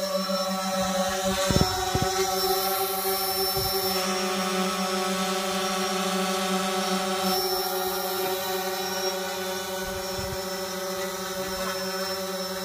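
Quadcopter drone hovering close by: a steady propeller hum at an even pitch, with a couple of low thumps about a second and a half to two seconds in.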